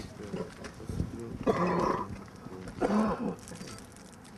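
A man shouting twice in a loud, raised voice, the words unclear, over faint background talk from a crowd.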